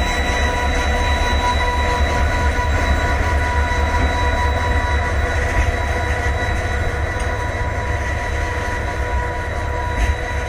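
Two Indian Railways diesel locomotives pass close while hauling a loaded freight train. They make a steady deep engine rumble with a constant high-pitched whine over it.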